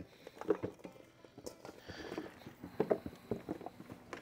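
Chunks of cold raw venison and fat tipped from a stainless steel bowl into a plastic bin, landing as scattered soft thuds and clicks, then hands working through the meat pieces.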